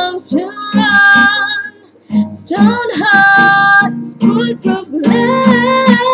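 A female voice singing long held notes over a strummed acoustic guitar, the guitar sounding a little scrappy. The singing dips briefly about two seconds in, then goes on.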